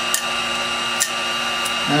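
VT1100 heat gun left running, its fan motor and blower giving a steady hum and hiss, with two or three light clicks as leftover adhesive is picked off a metal rod.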